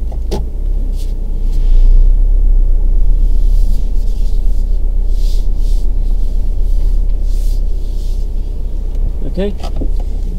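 A car's engine running and a low rumble heard from inside the cabin as the car is driven slowly through a turn in the road, getting louder about two seconds in.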